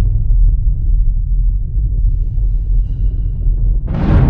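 Cinematic outro sound design: a loud, deep, sustained rumble left ringing from a trailer-style hit, with faint high shimmering tones in the middle. A new sudden whoosh and hit swells up right at the end.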